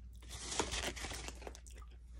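A person eating glazed chicken close to the microphone: a quick run of small crunchy, crackling sounds, thickest in the first second and a half, then thinning out.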